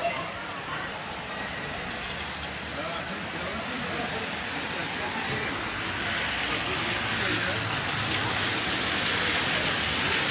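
Steady hiss of heavy wet snow falling on a wet street, growing gradually louder, with faint voices in the background.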